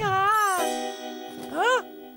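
A cartoon character's high, squeaky gibberish voice: a sliding call at the start and a short rising-and-falling squeak near the end, over a held musical chord that comes in about half a second in.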